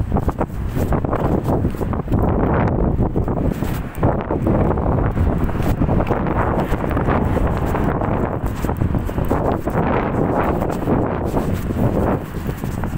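Wind buffeting an outdoor phone microphone: a loud, rushing noise that swells and dips unevenly.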